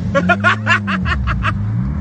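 A man laughing in a quick run of short bursts, over the steady drone of a Honda Civic EK9 Type R's 1.6-litre four-cylinder engine heard from inside the cabin, its pitch dipping and rising.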